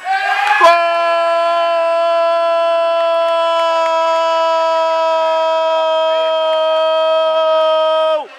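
A man's voice holding one long, unbroken shout at a steady pitch for about seven seconds: a drawn-out goal call for a penalty just scored. It starts about half a second in, after a brief noisy rush.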